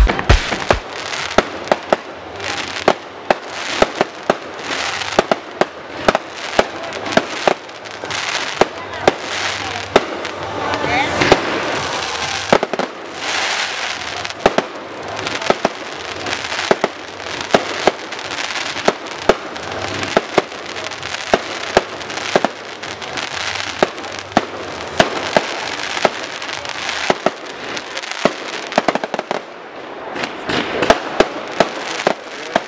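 Fireworks going off: an irregular, rapid string of sharp bangs, several a second, over continuous crackling.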